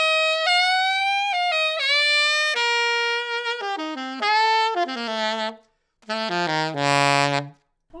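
Alto saxophone played with a SYOS Smoky 3D-printed mouthpiece, its tone close to that of any hard rubber mouthpiece. It plays a phrase of held and moving notes in the upper register, pauses briefly, then runs down to a held low note near the bottom of the horn.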